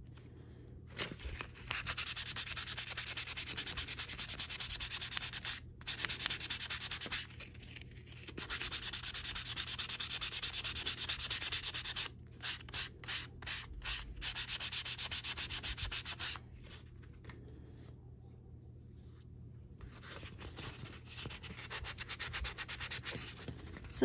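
A sanding sponge rubbed quickly back and forth along the edge of a strap, smoothing dried base-coat edge paint and taking down small lumps. The rasping comes in long runs of fast strokes with short pauses, a few separate strokes about halfway through, and lighter, quieter sanding in the last several seconds.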